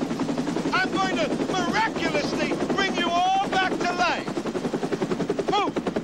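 A man's voice carrying on over a continuous rapid rattling pulse, about eight beats a second, that comes to the fore after about four seconds.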